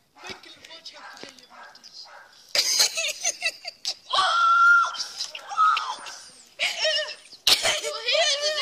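Boys' voices shouting and yelling in unclear, wordless bursts, with one long held yell about four seconds in and high squeals near the end.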